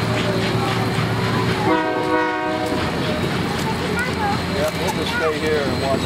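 Union Pacific 844's passenger train rolling past with a steady drone, then a train whistle blast about a second long, about two seconds in.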